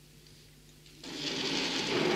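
A loud, dense whirring rattle starts suddenly about a second in and lasts about a second and a half.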